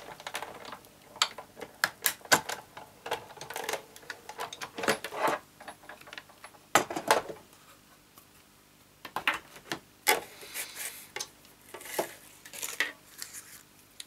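Big Shot die-cutting machine being hand-cranked, its clear cutting plates and magnetic platform passing through the rollers with irregular clicks and knocks. After a short pause in the middle, more clicks and some rustling as the plates are lifted off and the die-cut cardstock handled.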